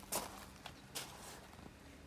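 Footsteps crunching on gravel, about three steps in the first second.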